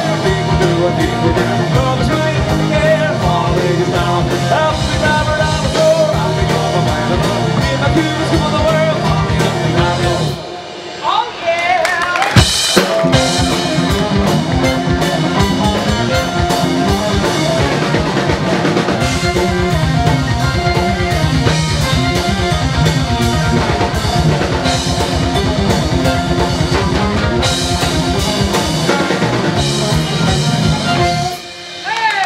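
Live rock band playing with electric guitars, bass guitar, fiddle and drum kit, with a steady driving beat. About ten seconds in the band drops away briefly, then comes back in full with a loud hit.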